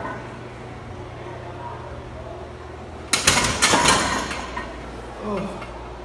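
A heavily loaded barbell racked with a sudden metallic clank about three seconds in, together with a man's strained shout that fades over about a second.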